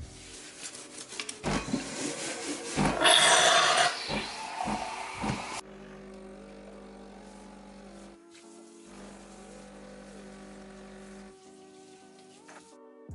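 Clattering handling noises and a loud hiss from a capsule coffee machine's milk system, then the machine's pump humming steadily while coffee pours into the frothed milk. The hum breaks off briefly in the middle.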